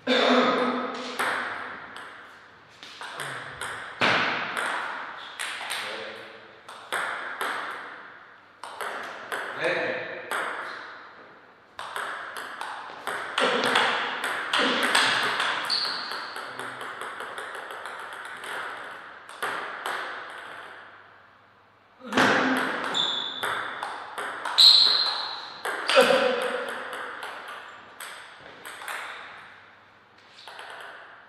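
Table tennis ball clicking off paddles and the table in several quick rallies, ringing in a reverberant hall, with short lulls between points.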